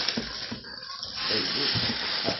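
A person inhaling deeply in a long breathy hiss, growing louder in the second half.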